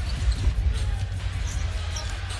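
A basketball dribbled on a hardwood court, bouncing repeatedly, over music with a heavy low bass and the hum of a crowd.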